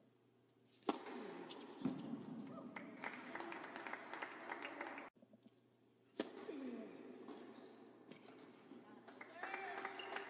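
Tennis serves: a sharp pop of racquet on ball about a second in and again about six seconds in, with faint crowd chatter in the indoor hall between them.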